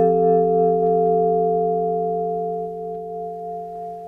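Yamaha Clavinova digital piano's vibraphone voice: one chord struck and left ringing, slowly fading, with a steady tone and no tremolo, the left pedal holding the vibraphone rotors stopped.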